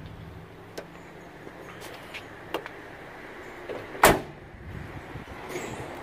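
A pickup truck door shut once with a solid slam about four seconds in, with a few light clicks before it over a faint background hum.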